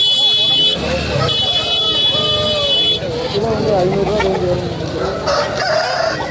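Roosters calling in a crowded poultry market, with people talking. A steady shrill tone sounds twice, the second time cutting off about three seconds in.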